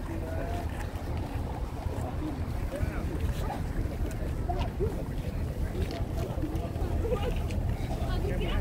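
Wind buffeting a phone microphone as a low, uneven rumble, with faint chatter of people in a walking group.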